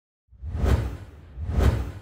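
Two whoosh sound effects from an animated logo intro, about a second apart, each swelling and fading away, with a heavy low end.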